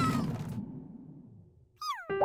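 Cartoon sound effects: a falling tone and a low rumble die away to near silence. Near the end comes a short, high, falling glide with overtones, like a cartoon character's squeal.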